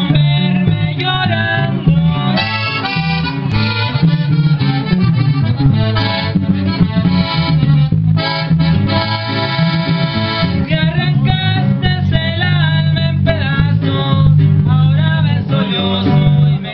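Norteño-style band playing live: a piano accordion leads with quick melodic runs and a held chord in the middle, over a twelve-string electric guitar and a steady electric bass line.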